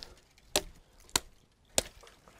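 Three sharp chops of a hand-held blade into a willow stem, about two-thirds of a second apart, cutting a long willow rod.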